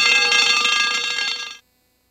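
A loud bell-like alarm ringing steadily on the film soundtrack, cut off suddenly about a second and a half in.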